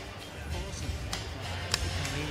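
Background music with a steady low beat, faint voices under it, and two sharp clicks: one about a second in and one near the end.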